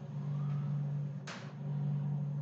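A steady low hum, with a short hiss about a second in.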